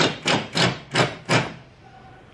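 Hand patting a cushion in its fitted fabric cover: five quick thumps, about three a second, that stop about halfway through.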